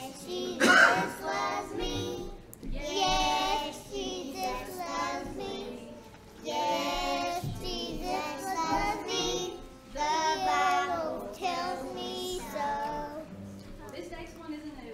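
A group of young children singing a song together in short phrases, with an acoustic guitar accompanying them. A brief loud burst comes about a second in.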